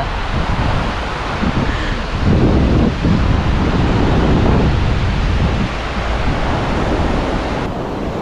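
Wind blowing across the microphone over surf breaking on a sandy beach: a steady rushing noise, loudest low down, swelling a little in the middle.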